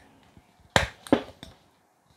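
Two sharp clicks, about 0.4 s apart, as needle-nose pliers grip and work a Blue Yeti microphone's knob through a microfiber cloth.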